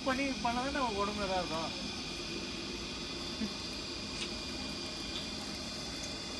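A man's voice for the first second or two, then steady outdoor background noise with a faint, steady high-pitched drone and a couple of faint clicks.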